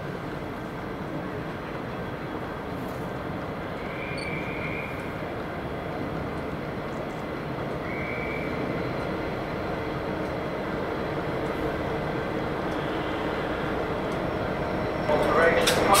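Class 59 diesel-electric locomotive drawing a train of coaches slowly into a station platform, its two-stroke EMD engine running at low power under a steady rumble that grows gradually louder as it approaches.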